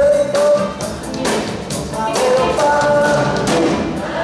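Live rock and roll band: a man singing lead over electric guitars and drums.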